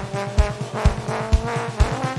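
Live funk band with a horn section playing a held, bending line in unison over a steady kick drum, about two beats a second.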